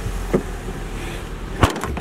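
A car's rear tailgate being shut: a light knock about a third of a second in, then one sharp slam near the end, over a low steady rumble that stops with the slam.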